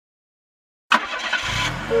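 Cartoon car sound effect: after about a second of silence, a car engine starts up with a sudden noisy burst and settles into a low running rumble. A horn beep begins right at the end.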